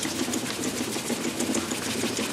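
A wire-mesh barbecue grill grate being scrubbed hard and fast with a scourer over a tub of soapy water: rapid, continuous scraping strokes of the scourer across the metal mesh.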